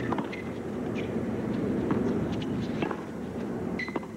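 Tennis rally: sharp racket-on-ball hits about a second apart over the steady hush of an arena crowd.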